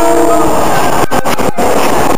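Electric commuter train passing close by at speed, its cars rushing past loudly, with the tail of a horn chord fading out in the first half-second. The overloaded recording cuts out briefly a few times.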